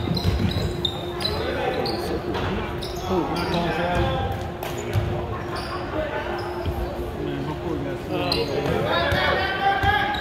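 Basketball bouncing on a hardwood gym floor as players dribble, with a scattering of short knocks and the voices of players and spectators, echoing in a large gym hall.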